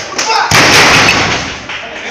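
A wrestler lands on the ring mat with a heavy thud about half a second in, followed at once by loud shouting from spectators.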